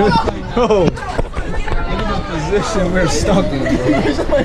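Several young men's voices talking and calling out over one another in a loud, unintelligible jumble of chatter.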